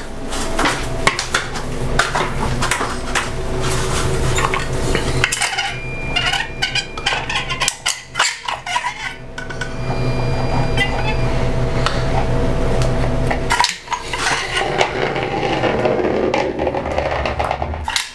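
A hand caulking gun clicking and clanking as its trigger is squeezed and its plunger rod worked, laying beads of caulk along crown molding joints. A steady low hum runs underneath, with a short lull about 14 seconds in.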